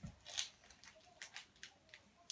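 Faint crinkling of a blind bag's wrapper being pulled and torn open by hand, in several short separate crackles, the loudest about half a second in.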